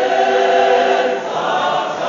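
Mixed gospel choir singing unaccompanied in harmony, holding sustained chords, with a brief dip in loudness about two-thirds through.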